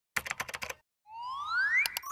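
Animated sound effects: about eight quick keyboard-typing clicks, a short pause, then a rising whistle-like tone, ending in a quick double mouse click.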